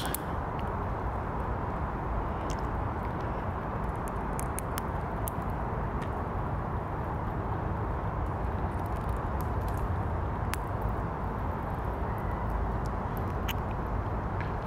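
Eurasian red squirrel cracking pine nut shells with its teeth: scattered faint, sharp crackles and clicks, in a cluster near the middle and again toward the end, over a steady low background rumble.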